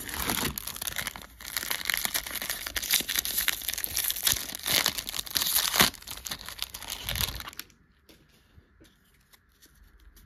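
Silver foil wrapper of a 2024 Topps Series 1 baseball card pack being torn open and crinkled by hand: a dense, crackling rustle that stops about seven and a half seconds in.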